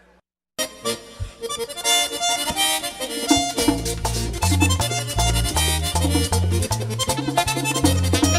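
After a split-second silence, a merengue típico accordion starts playing a fast run of notes. Regular percussion strokes and low bass notes join it, the bass entering about three and a half seconds in.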